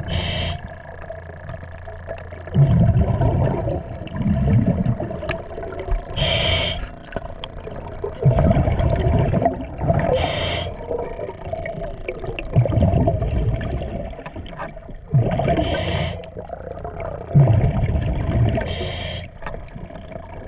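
Diver breathing underwater through a regulator: a short hissing inhale about every four to five seconds, each followed by a longer low rumble of exhaled bubbles.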